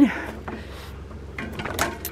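A breath out followed by light handling sounds as someone sits down on a bench while holding a bicycle, with a few short knocks and scrapes near the end.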